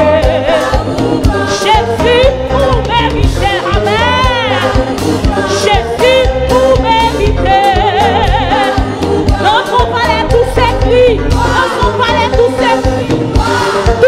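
Gospel worship song: sung vocals with wavering vibrato over band backing with a steady low beat.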